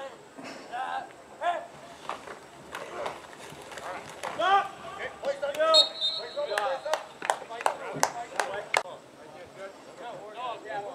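Football players and coaches shouting short calls across the field during a scrimmage play, with a series of sharp knocks over the second half.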